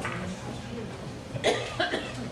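A person coughing twice in quick succession about one and a half seconds in, over a low murmur of voices.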